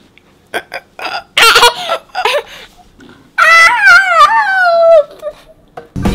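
A toddler girl laughing in short bursts, then a long high-pitched squeal that falls in pitch, lasting about a second and a half.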